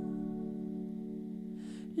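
Sustained electric guitar chord drawn out through effects, held steadily and slowly fading. A short breathy sound comes near the end.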